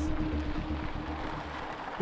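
Background music: one held note slowly fading over a low rumble.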